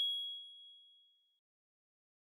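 Single bright electronic chime of a logo ident, one high ringing tone that fades away within about a second.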